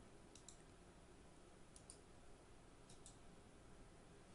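Faint computer mouse clicks, given as three quick double-clicks about a second and a half apart, against near-silent room tone.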